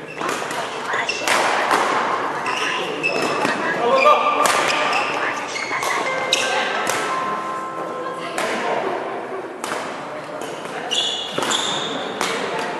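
Badminton rally: a string of sharp racket hits on a shuttlecock, irregularly spaced about a second apart, with short shoe squeaks and footfalls on the court mat, echoing in a large hall.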